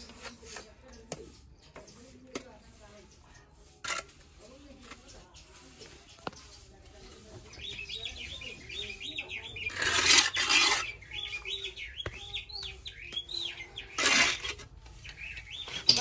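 A trowel scraping and smoothing wet cement mortar, with two loud scrapes about ten and fourteen seconds in and a few small clicks before. Through the second half a small bird chirps in quick rising-and-falling notes.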